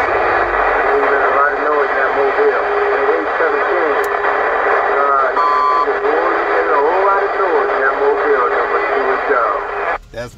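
Incoming transmission on a Cobra 148GTL CB radio through its speaker: a loud, narrow, tinny voice signal that is garbled and buried in heavy static hash, with words that can't be made out. It drops away at the end.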